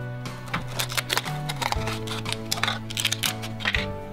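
A clear plastic toy package being opened by hand: many quick crackles and clicks of stiff plastic, over background music with steady held notes.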